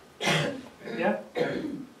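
A person clearing their throat and coughing: three short, rough bursts about half a second apart.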